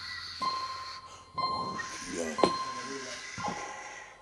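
Closing moments of a reggae band's song: a single high note sounds about once a second, four times, ringing on and dying away as the music fades, with a short sharp tap about halfway through.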